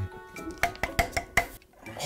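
About four light metallic clicks and knocks from the metal desk frame being handled during assembly, over quiet background music.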